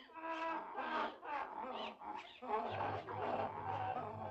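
Cartoon donkeys braying and crying out, several calls with bending pitch one after another. A low steady hum comes in about two-thirds of the way through.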